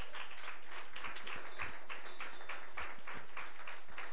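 Hand clapping in a quick, even rhythm, about five claps a second.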